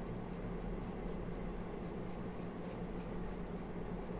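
Flat paintbrush scrubbing wax patina over a panel of small raised stones: a quick, dry, scratchy brushing, about three to four strokes a second.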